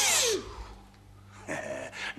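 A man's voice ends in a short, loud, breathy hiss, then falls quiet. About a second and a half in, low whispered speech begins.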